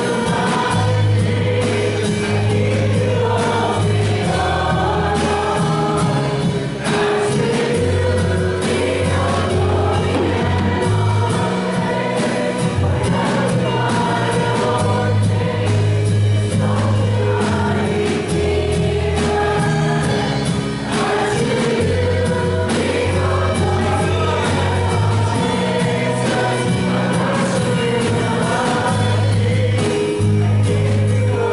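A live church worship band playing a gospel song: guitars, keyboard, drum kit and bass guitar, with bass notes held a second or two each, under a group of singers.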